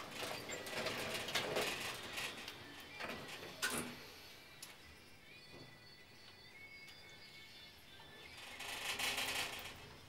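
Passenger lift doors sliding shut and closing with a single thump, then the car starting its descent with faint high, steady whining tones from the lift drive.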